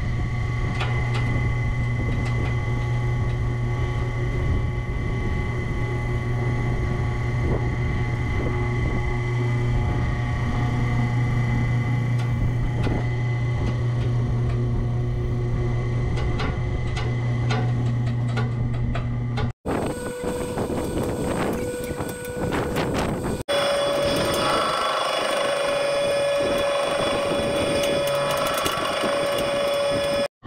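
Electric boat-davit winch motors running with a steady hum as they hoist the boat out of the water. About 20 s in the sound cuts off abruptly and is replaced by a different steady mechanical hum carrying a higher steady tone.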